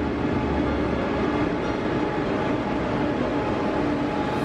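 Steady low rumble and hum of a railway station: a moving escalator running, with a train at the platform.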